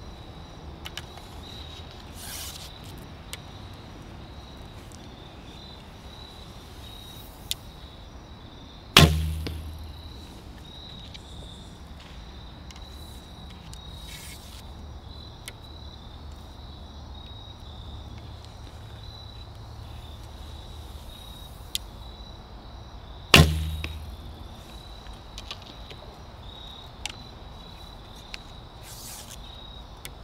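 Two shots from a 43-pound traditional bow, each a sharp string release with a deep thump that dies away quickly, the first about nine seconds in and the second about fourteen seconds later; a faint click comes about a second and a half before each. Crickets chirr steadily underneath.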